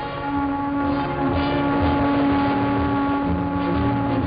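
Ship horns and whistles sounding in a harbor salute: one long steady blast held for about three seconds, with a lower horn joining briefly near the end.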